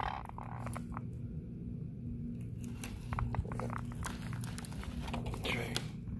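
Handling noise from a phone camera being moved around: scattered clicks and light rubbing over a steady low hum.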